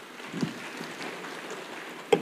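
Faint steady background noise in a pause between spoken phrases, with a brief soft low sound about half a second in.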